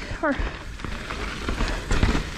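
Downhill mountain bike tyres rolling over a dirt and small-rock trail: a steady gritty rush with low wind rumble on the mic and a few light knocks from the bike.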